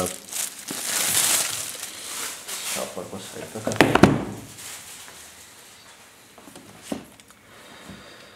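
Thin clear plastic bag crinkling as a cardboard planner box is pulled out of it, the rustling fading over the first few seconds. A sharp knock about four seconds in as the box is set down on the table, and a lighter tap near seven seconds.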